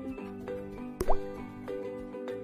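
A single cartoon plop sound effect, a quick upward-gliding bloop about a second in, for a pebble dropping into the water in a glass pitcher. Background music plays underneath.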